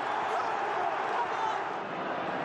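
Large football stadium crowd cheering a late equalising goal: a steady roar of many voices.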